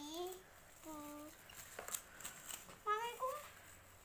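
A child's voice making a few short, high-pitched vocal sounds, with faint crinkling ticks of a thin plastic bag being handled between them.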